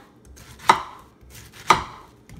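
Kitchen knife slicing through a peeled pineapple and hitting a wooden cutting board: two sharp knocks about a second apart.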